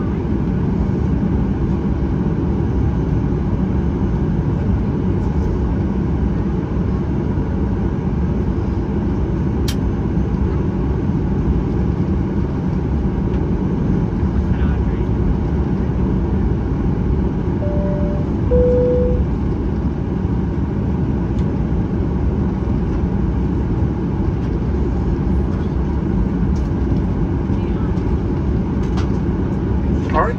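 Boeing 737-800 cabin noise while taxiing, heard from a window seat over the wing: the CFM56-7B turbofan engines give a steady low rumble at taxi power. About two-thirds of the way through, a two-tone cabin chime sounds once, high then low.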